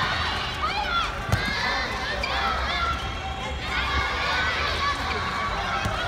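Many high-pitched girls' voices shouting and calling out over one another, with one sharp knock about a second and a half in.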